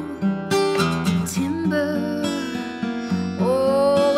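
Solo acoustic guitar playing with a steady pulsing bass line under the melody, and a woman's voice coming in with a long held sung note near the end.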